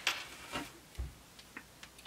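Light handling sounds of a canvas zipper pouch and small yarn skeins on a tabletop: a few soft clicks and taps, with a dull thump about halfway through as something is set down.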